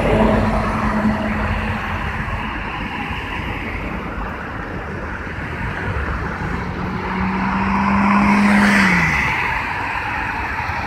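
Road traffic passing on a busy multi-lane street. A tractor-trailer goes by at the start, and another vehicle swells past about eight seconds in, its hum falling in pitch as it passes.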